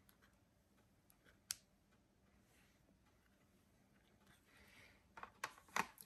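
Near silence with faint handling noise: a single sharp click about one and a half seconds in, then a soft rustle and a few louder clicks near the end as a glass screen protector is laid back into its cardboard packaging.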